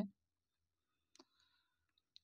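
Near silence, broken by one faint short click a little over a second in.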